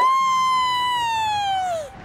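A cartoon whistling sound effect: one long tone that swoops up at the start, holds, then slowly sinks and falls away near the end.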